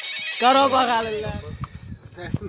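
A man's drawn-out cry that falls in pitch, over a low rumble; it fades near the end.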